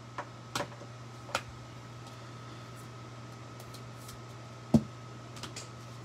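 A few light clicks and taps of plastic card holders being handled and set down, the loudest near the end, over a steady low hum.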